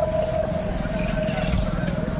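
Steady low engine-like rumble, with a held tone that fades out about halfway through.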